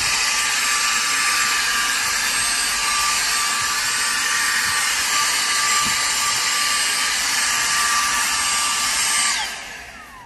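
Dyson cordless handheld vacuum running at a steady high whine while vacuuming the car interior, then switched off near the end, its whine falling as the motor spins down.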